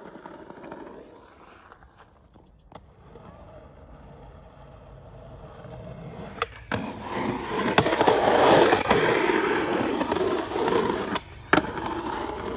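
Skateboard wheels rolling over rough concrete, faint at first and much louder in the second half, with two sharp clacks of the board, about halfway through and again near the end.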